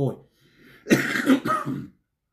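A man clearing his throat: one rough, noisy burst lasting about a second, beginning about a second in, just after he finishes a word.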